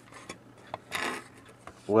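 Light handling sounds of an opened battery charger's circuit board and casing being moved about, with a short rustling scrape about a second in and a few faint clicks.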